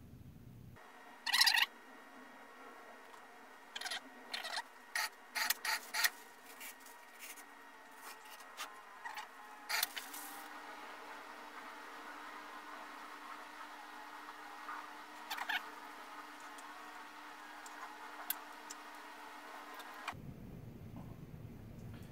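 Scattered light clicks and knocks of hand work: a stir stick scraping and tapping on an epoxy-filled log blank, and the blank being handled at a metal pressure pot. Most of the knocks fall in the first half, over a faint steady hum.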